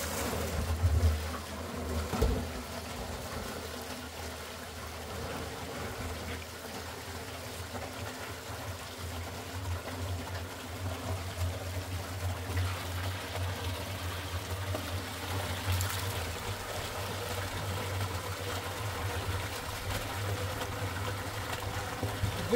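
Water churning and splashing as a submersible pump is test-run in an oil drum, pumping water out through a hose onto gravel. The sound is a steady rush with a low hum underneath.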